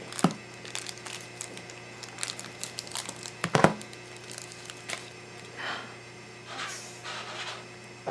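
Scissors snipping open a small foil blind-bag packet, then the packet crinkling and rustling as fingers tear and work it open, with scattered small clicks. One louder clack about three and a half seconds in.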